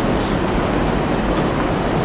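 Steady background noise with no speech: an even hiss over a low rumble, the hall's room and recording noise.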